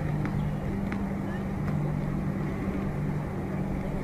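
A steady low mechanical hum, like an engine running nearby, with a couple of faint taps in the first second, typical of a tennis ball being bounced on a hard court before a serve.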